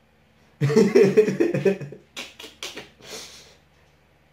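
A man bursting into laughter about half a second in: a loud run of voiced 'ha' pulses lasting over a second, then several shorter breathy laughs that fade out.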